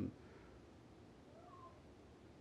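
Near silence: faint room tone, with a faint, brief wavering tone about a second and a half in.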